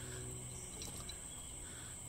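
Quiet background dominated by a faint, steady high-pitched insect drone, like crickets, with no distinct knocks or tool sounds.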